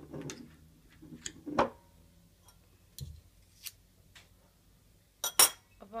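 Metal spoon clinking and scraping against a glass jar and a glass bowl while chocolate spread is scooped out: a series of short, sharp clinks, loudest about a second and a half in and again near the end.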